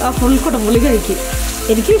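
Thick red chili masala sizzling in a hot pan as a wooden spatula stirs and scrapes it round. Background music with a steady beat plays over it.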